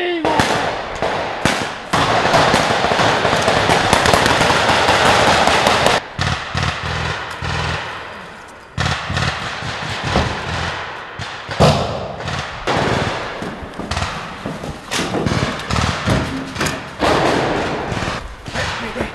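Military rifle gunfire, single shots and short bursts of sharp reports coming in clusters. A dense, noisy stretch fills the first few seconds.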